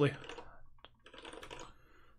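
Faint typing on a computer keyboard in two short runs, with a single sharper click about a second in.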